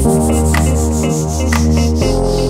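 Instrumental intro of a dance track: held chords over a steady bass, a whooshing noise sweep falling in pitch, and a sharp hit about once a second.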